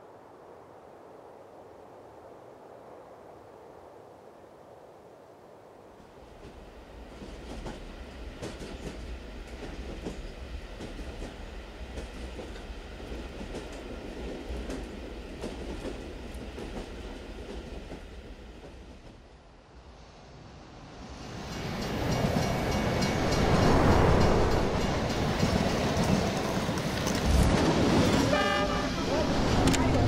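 Passenger train running, its noise coming up about six seconds in and growing much louder after about twenty seconds, with a train horn sounding.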